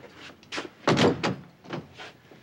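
A door being shut, its loudest knock about a second in, with a few lighter knocks around it.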